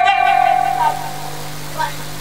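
A performer's high-pitched voice held on one long note that fades away about a second and a half in, over a steady low hum.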